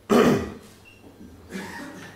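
A person clears their throat once, a short loud burst right at the start that falls in pitch, followed by a much fainter sound near the end.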